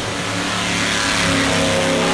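Drag-racing car with a PT Cruiser body accelerating hard down the strip from a launch. The engine is loud, and its pitch climbs steadily as the car pulls away.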